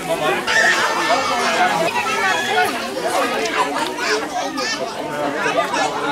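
Several voices talking over one another: background chatter from a number of people.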